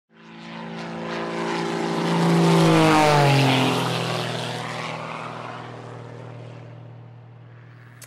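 Propeller airplane flying past: its engine drone swells to its loudest about three seconds in, drops in pitch as it passes, and fades away.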